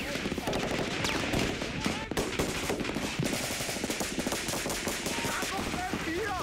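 Rapid, overlapping gunfire from automatic weapons in an exchange of fire, shot after shot with no break.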